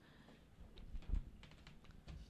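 A few faint, scattered taps and clicks in a quiet room, the clearest about a second in.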